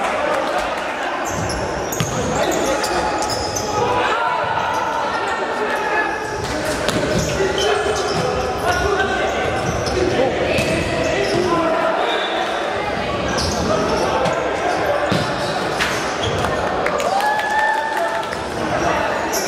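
Futsal being played in an echoing sports hall: a ball kicked and bouncing off the hard court floor in repeated sharp knocks, with players' shouts throughout.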